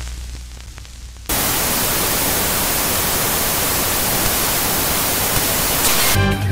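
Television static sound effect. A low electrical hum with faint hiss comes first, then about a second in it jumps to a loud, even white-noise hiss that holds steady.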